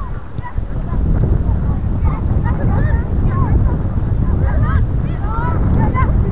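A flock of geese honking: many short overlapping calls, growing busier from about two seconds in.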